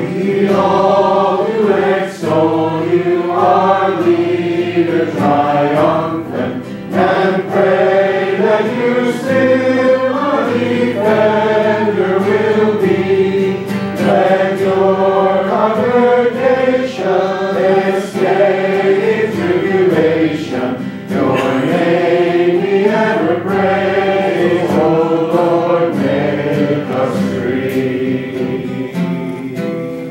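A choir and congregation singing a hymn in a church, voices carrying a steady melody line.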